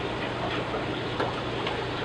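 Aquarium water running and trickling steadily, with a low steady hum underneath.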